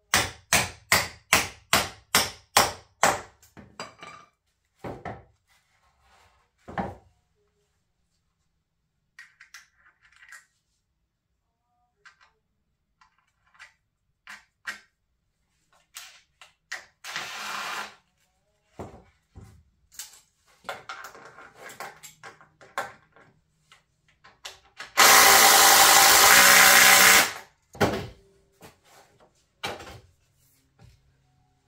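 A hammer striking a pressure-treated 2x4 frame in a quick run of about three blows a second, then a few scattered knocks. A cordless drill runs briefly near the middle, then runs loudly and steadily for about two seconds near the end.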